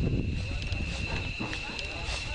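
Faint, indistinct voices over a low outdoor rumble, with a steady high-pitched whine throughout.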